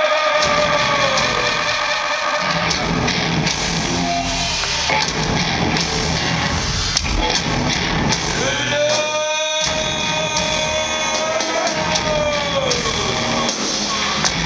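Live rock band playing loud amplified guitars and keyboards, heard from the audience in a large hall. A male voice holds two long notes over it, one at the start and one from about the middle, each sliding down as it ends.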